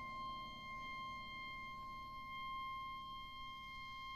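A single high note held softly and steadily in a contemporary chamber-ensemble piece, a pure, bell-like sustained tone with nothing else moving.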